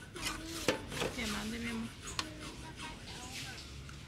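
A metal spoon scraping refried beans in a frying pan and serving them onto a plate, with a few sharp clicks of the spoon against the pan.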